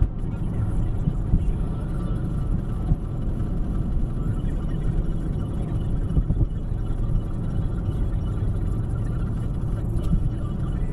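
Road and engine noise inside a moving car at motorway speed: a steady, dense rumble.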